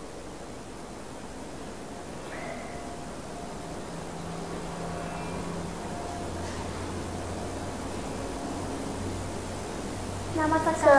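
Steady background hiss of room noise with a low hum underneath that gets a little stronger about halfway through, and a few faint, brief tones.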